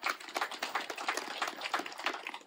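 Audience applauding: many hands clapping together, fading out near the end.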